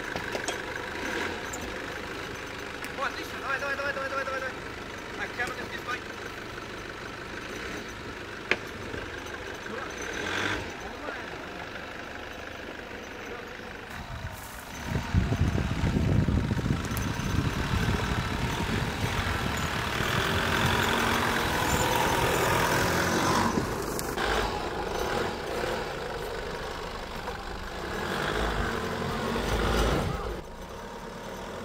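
Nissan Patrol 4x4's engine running at low speed while crawling over rutted off-road terrain, growing much louder about halfway through as it pulls under load.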